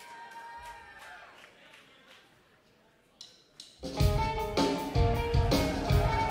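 Metalcore band's electric guitars and drum kit playing live: quiet for the first few seconds, then the full band comes in loud about four seconds in with a repeating, accented riff.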